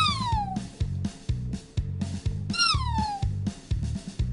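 Two cat meows about two and a half seconds apart, each a single call falling in pitch, over background music with a steady beat.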